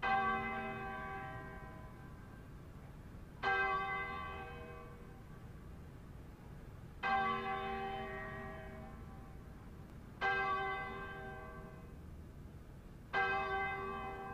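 Church bell tolling five slow strokes about three seconds apart, each ringing and fading before the next: striking five o'clock.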